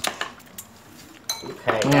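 Wooden chopsticks knocking against a bowl: one sharp click, then a few lighter clicks. A voice begins near the end.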